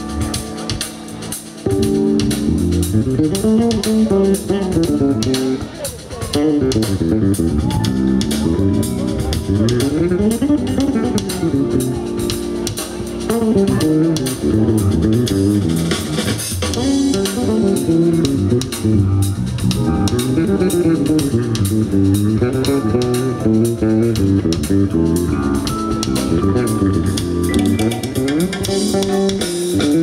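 Jazz band playing live, led by an electric bass guitar running quick, sliding note lines in the low register over drum kit.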